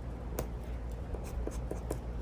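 Light handling sounds on a paper planner page: fingers rubbing and pressing on paper, with a sharp click about half a second in and a few faint ticks later, over a low steady room hum.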